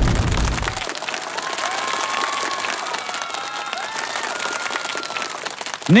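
Studio audience applauding, with scattered cheering voices, at the close of a dance performance. The music's last bass note stops about a second in, leaving the applause on its own.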